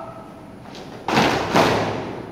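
A platoon's boots stamping on a concrete floor in unison as a foot-drill movement is carried out: two slightly ragged thuds about half a second apart, a second or so in.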